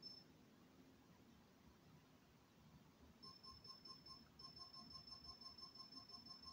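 Faint rapid beeping, about five beeps a second over a steady high tone, starting about three seconds in after near silence. It is an electronic speed controller sounding through a 1000 kV brushless outrunner motor while the motor is not yet turning, during throttle calibration.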